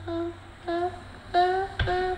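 A person humming four short notes at one steady pitch, with brief gaps between them.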